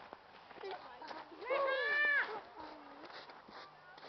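A single high-pitched, drawn-out vocal call lasting under a second, about halfway through, followed by a quieter, lower sound.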